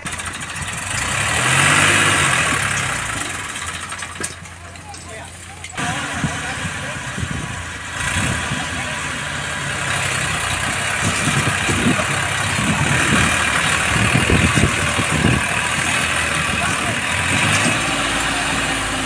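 Massey Ferguson 7250 tractor's diesel engine running, its level stepping up about six seconds in and staying louder through the second half, as the tractor takes up a loaded trolley.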